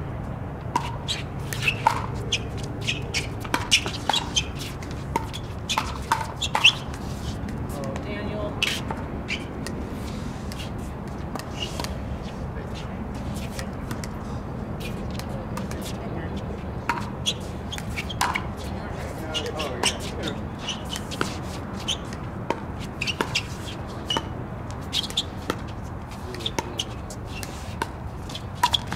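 Pickleball paddles striking the hard plastic ball: sharp pops at irregular intervals, some close and loud, others fainter, over a steady low background hum.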